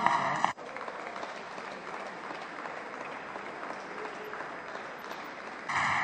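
Applause from the benches of a parliament chamber as a speech ends. It drops suddenly about half a second in, as a microphone is cut, carries on fainter and steady, and rises again shortly before the end.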